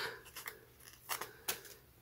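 Paper planner sticker being handled: three or four short, faint, crisp clicks and crackles, about half a second, a second and one and a half seconds in.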